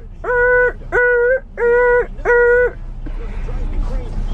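A car's seatbelt reminder chime sounding four even beeps of one steady tone, about one and a half a second, then stopping a little under three seconds in; it goes when the seatbelt is left unbuckled.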